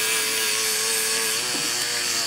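Proxxon Micromot rotary tool running at speed, a steady whine that holds its pitch, with a buffing wheel loaded with polishing compound working a clear plastic model canopy.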